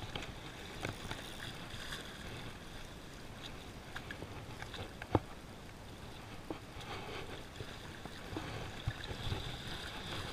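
Small waves washing and lapping against breakwall rocks, with a few light clicks and knocks, the sharpest about halfway through.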